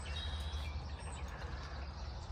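Outdoor ambience: a few faint bird chirps over a low, steady rumble.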